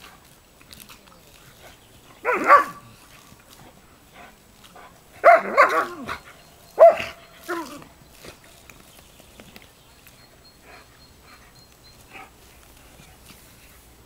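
German Shepherd barking in short bursts: a single loud bark a couple of seconds in, then a quick run of about four barks a few seconds later.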